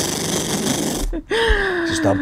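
A person laughing hard and breathlessly close to the microphone, a wheezing, breathy laugh. After a short catch about a second in, it turns into a drawn-out voiced sound that slides slightly down in pitch.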